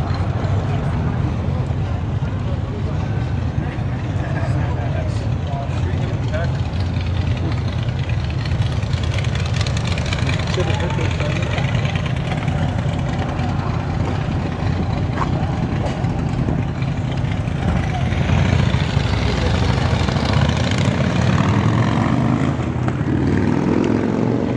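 Steady low rumble of car engines running, with people talking in the background; the rumble grows a little louder near the end.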